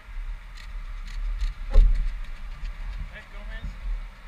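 Wind rumbling on an outdoor camera microphone, with a stronger gust about two seconds in, and a few faint voices of people on the path near the end.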